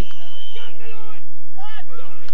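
A referee's whistle blown once, a short steady high note, signalling a foul and a free, followed by distant shouts from players on the pitch.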